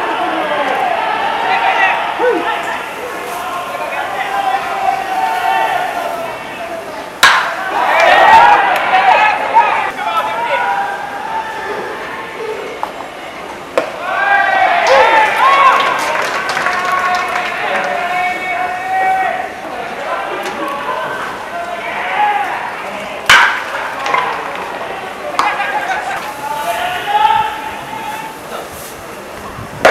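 Voices calling out around a baseball field throughout, broken by sharp pops of pitched balls smacking into the catcher's mitt, the loudest about seven seconds in and again about twenty-three seconds in.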